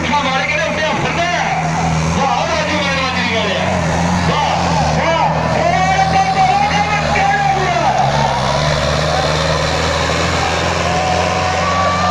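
Preet 6049 diesel tractor engine running hard and steady under load, dragging a weighted sledge through dirt. Men's voices shout over it throughout.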